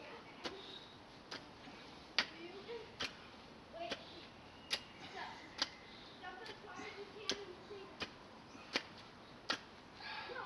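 Garden hoe tines striking the soil in steady strokes as a furrow is drawn: a sharp click about every three-quarters of a second, a dozen in all.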